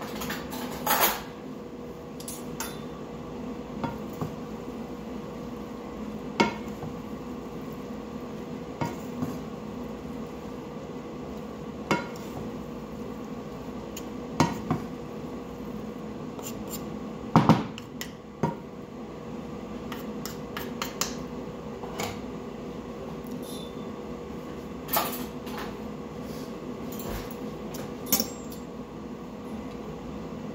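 A metal fork and spoon knock and scrape against a frying pan as rice noodles are tossed and mixed in it, with irregular clinks every second or two over a steady hum.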